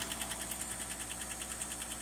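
A 1960 Chevrolet 235 straight-six idling steadily on its first warm-up after about 30 years laid up, with a light tick from the engine: still a little ticky.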